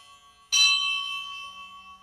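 A bell struck once about half a second in, ringing with several clear steady tones and dying away over about a second and a half, in the pause between chanted mantra repetitions.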